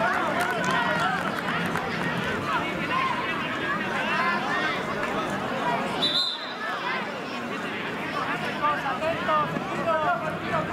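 Many voices of spectators and young players calling and shouting over one another around a football pitch, with a short high whistle blast about six seconds in.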